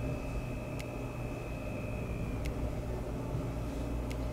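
Steady low background hum with a faint high-pitched whine that stops about two and a half seconds in, and a few faint ticks.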